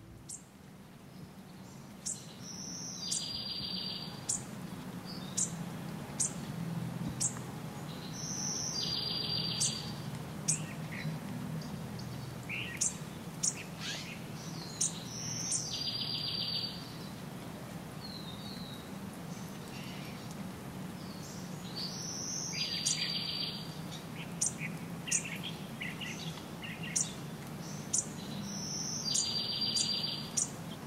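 A songbird repeating a short song about every six to seven seconds: a brief high note followed by a buzzy trill lasting about a second. Many brief chirps from other birds fall between the songs, over a low steady hum.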